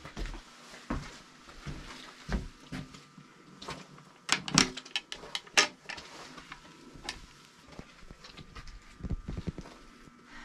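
Scattered sharp clicks and knocks of wood and metal as a wooden hiker-log box with a hinged lid is handled, opened and its record book taken out, the loudest cluster about halfway through.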